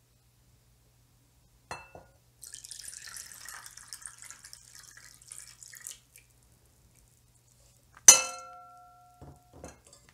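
Slab-sugar syrup poured from a glass bowl into a ceramic bowl of cold water, a few seconds of splashing trickle. About two seconds later the glass bowl is set down with a sharp clink that rings briefly, followed by two light knocks.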